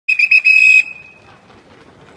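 A shrill whistle blown in a few quick short blasts and then one longer blast, all within the first second.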